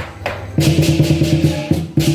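Southern lion dance percussion: a couple of cymbal clashes, then the big lion-dance drum starts a fast, even roll about half a second in, breaking off briefly near the end.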